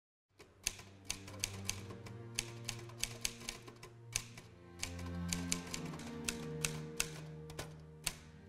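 Manual typewriter keys striking the paper in an irregular run of sharp clacks, about two a second, over soft background music with long sustained low notes.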